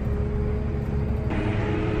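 Tractor engine running steadily, heard from inside the cab as a constant low drone with a steady hum.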